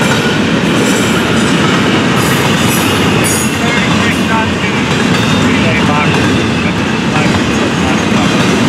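Double-stack intermodal freight cars rolling past close by: a loud, steady noise of steel wheels running on the rails.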